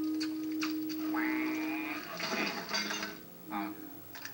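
Cartoon soundtrack playing from a TV speaker: a held low musical note with scattered light clicks, then a brighter burst of effects partway through.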